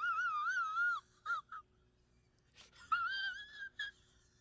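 A man whimpering in a high, quavering falsetto, like someone about to cry. There is a long wavering whine for about a second, two short catches, then another wavering whine about three seconds in.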